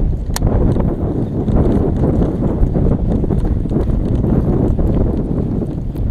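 Loud, low rumbling buffeting on a body-worn action camera's microphone, irregular and without any clear tone.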